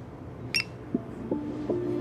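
A single light clink about half a second in as an ink brush is set down in a small ceramic ink dish, followed by soft plucked-string music notes that begin about a second in and build.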